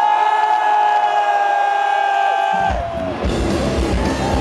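Live rock band in an arena: the drums and bass drop out, leaving one steady high note held over crowd cheers. The full band comes crashing back in about two and a half seconds in.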